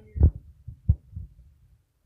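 Two dull, low thumps about two-thirds of a second apart, then a faint low rumble that dies away shortly before the end: handling noise on a phone's microphone.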